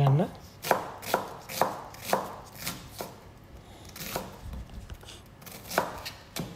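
Chef's knife chopping a red onion on a plastic cutting board: separate sharp knife strikes, about two a second, with longer gaps in the second half.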